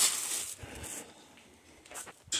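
Clear plastic packaging wrap crinkling as it is grabbed and handled, a sudden crackle at the start that lasts about a second and then dies down.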